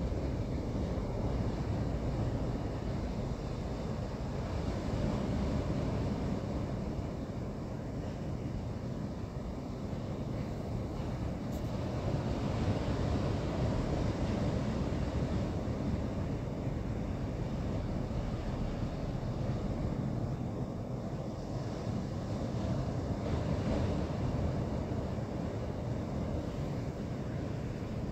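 A steady, low rumbling noise with no clear beat or tune, swelling and easing slowly.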